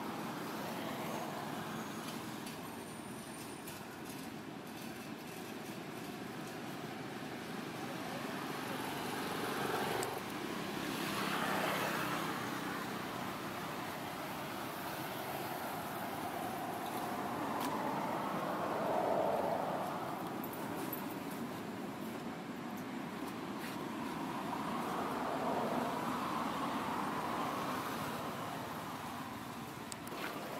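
Steady background of road traffic, swelling and fading a few times as vehicles pass.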